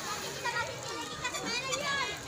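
Children playing in a swimming pool: many overlapping young voices calling and shouting, with high-pitched wavering cries near the middle.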